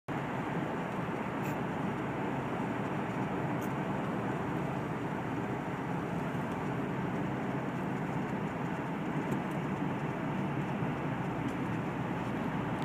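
Steady road and engine noise of a car driving through a highway tunnel, heard from inside the cabin: an even rumble and roar at a constant level.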